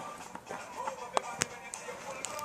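Light clicks and knocks of plastic RCA cable plugs being handled, with two sharp clicks a quarter second apart about a second in.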